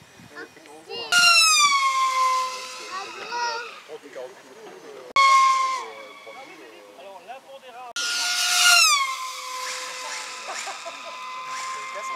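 Radio-controlled model airplane engine heard in three fast passes. Each pass comes in suddenly as a loud, high-pitched note that drops in pitch as the plane goes by, then holds a steadier tone.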